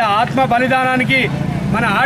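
A man speaking in Telugu in a raised, forceful voice, with a steady low hum of background noise behind him.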